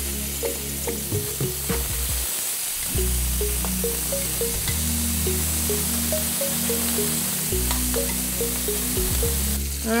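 Shrimp frying in hot olive oil in a smoking-hot cast iron pan: a steady sizzle throughout. Background music plays underneath, a melody of short notes over sustained bass notes.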